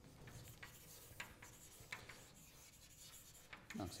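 Chalk writing on a blackboard: faint scratches and short taps as a formula is written out.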